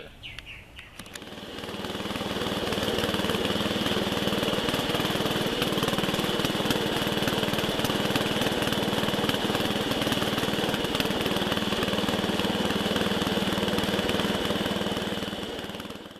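A small engine running steadily. It fades in over the first couple of seconds and fades out at the end.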